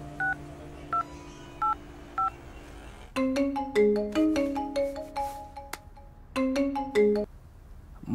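Mobile phone keypad tones: four short two-note beeps as a number is dialled. About three seconds in, a mobile phone ringtone starts, a quick melody of short notes that breaks off briefly and stops just before the end: the called phone ringing.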